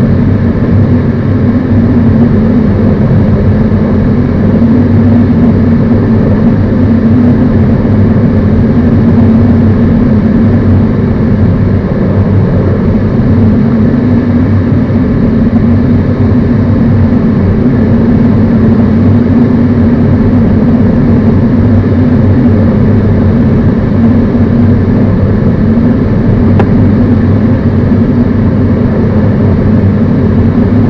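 Steady drone of the tow plane's piston engine pulling the glider on aerotow, with air rushing over the canopy, heard from inside the glider's cockpit.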